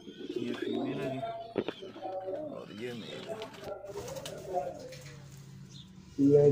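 Fantail pigeons cooing repeatedly in low, bending calls, with one sharp click about one and a half seconds in.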